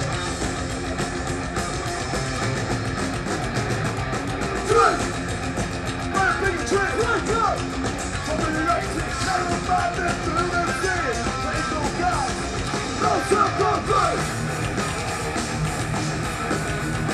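Heavy metal band playing live: distorted electric guitars, bass and drums. From about five seconds in, a lead line with bending, wavering pitch rides over the top.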